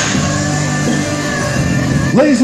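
Rock music playing.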